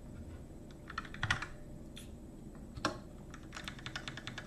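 Computer keyboard typing in short irregular bursts of key clicks, with a couple of single harder keystrokes in the middle and a quick run of keys near the end.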